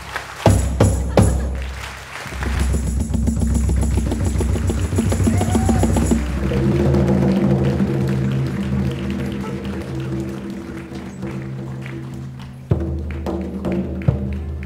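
Live band music: a few sharp hand-drum hits in the first second or so, then low sustained notes from a double bass under light percussion. A strong drum hit near the end brings the band back in.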